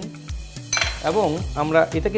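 Clatter of dishes and utensils on a stainless-steel kitchen counter, starting about a second in, over background music with a steady beat.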